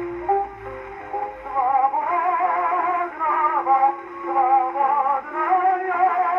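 Acoustic horn gramophone playing a reproduction of an early Berliner opera disc: piano-like accompaniment alone at first, then a male tenor voice enters about a second and a half in, singing with a wide vibrato. The sound is narrow and thin with no high end, as on an early acoustic recording.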